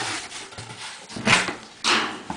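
Cardboard box flaps being folded and pressed shut: three short scraping rubs of cardboard on cardboard.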